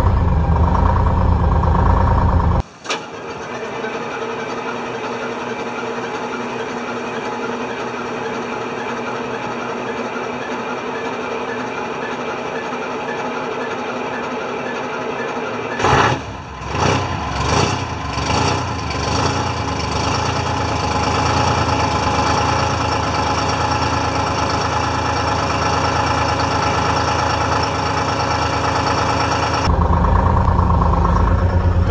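Detroit Diesel two-stroke diesel engine of a 1976 International Loadstar fire truck running steadily just after a cold start, heard from the cab and then beside the exhaust. A few uneven surges come about sixteen seconds in before it settles again.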